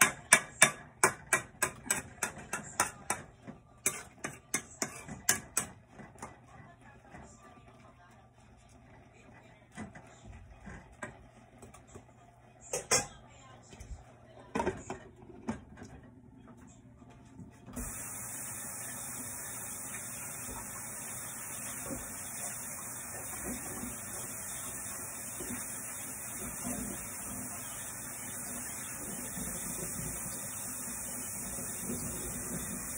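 A steel spoon scrapes and knocks against a metal pan while vegetables are stir-fried, about three strokes a second for the first several seconds. A few scattered clinks follow as a glass lid goes on the pan. Past the middle, a steady rush of tap water starts suddenly and runs on into the kitchen sink.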